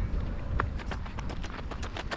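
Footsteps crunching on gravel, a quick run of sharp crunches over a low rumble.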